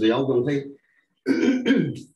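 A man speaking in two short phrases with a brief pause between them.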